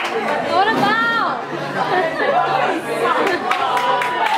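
Several people chattering over one another, with one high voice rising and falling in pitch about a second in.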